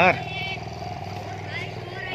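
Steady engine hum with an even pitch that holds throughout, with a word of speech at the very start.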